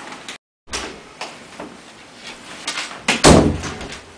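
A door shutting with a heavy thud about three seconds in. Before it there is a brief total dropout at an edit cut, and some faint handling knocks.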